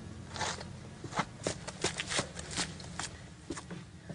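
Footsteps on a hard floor, a series of sharp clicks about three a second, over a low steady hum.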